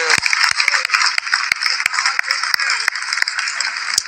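Audience applauding: a dense, steady spatter of claps that runs on until the next speaker begins.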